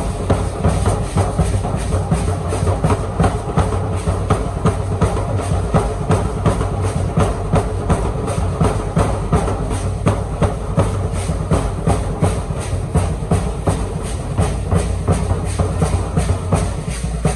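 Large danza drum beaten in a quick, steady beat, with the dancers' hand rattles shaking in time.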